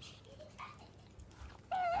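Pet otter giving a short, high squeaky call near the end, with a few fainter chirps before it.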